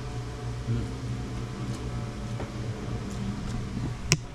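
Electric stand fan running with a steady low hum, with a few faint clicks of a fork against a plate.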